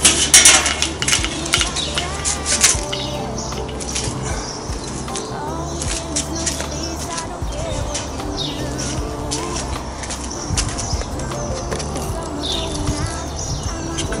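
A few sharp metallic clanks in the first seconds as the steel lid of a Weber Smokey Mountain smoker is lifted off. Steady background music plays underneath throughout.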